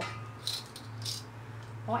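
Plastic clothes hangers rattling and clacking as a sweater on its hanger is picked up, in two short bursts about half a second and a second in, over a steady low hum.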